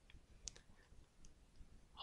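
Near silence with a few faint, brief computer mouse clicks, the clearest about half a second in.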